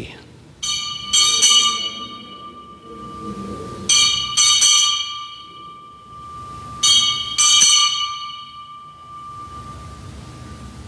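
Altar bells rung three times at the elevation of the chalice just after the consecration, each ringing a quick cluster of two or three strikes that rings on and fades before the next.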